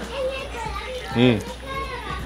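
Children's voices at play in the background, with a man's short "mm" a little over a second in.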